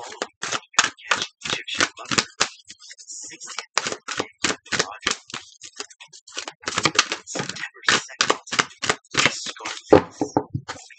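A deck of oracle cards being shuffled by hand: quick, irregular clicks and slaps of the cards, about three or four a second, with a brief pause around three seconds in.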